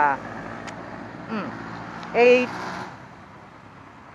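Low, steady hum of a Yamaha R15's single-cylinder engine running at low revs in street traffic, under a few short spoken words.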